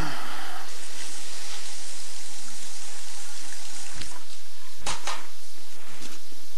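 Water running into a bathroom sink for about three seconds, then stopping, followed by two dull knocks.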